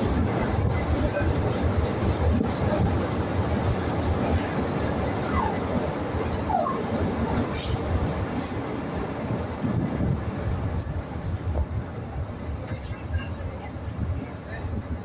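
Buenos Aires Subte Line E train heard from inside the car while it runs through the tunnel: a loud, steady rumble of wheels on rail, with brief wheel squeals about five to seven seconds in. Near the end the noise eases as the train slows into the station.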